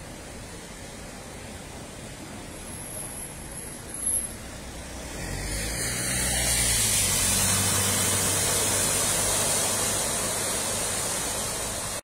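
A car driving through floodwater on a street: its engine runs under a loud rush of water sprayed up by the tyres. The sound swells about five seconds in, stays loud and eases slightly near the end. A brief knock comes just before the swell.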